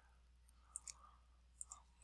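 Near silence broken by a few faint computer mouse clicks, two close together in the middle and one more near the end.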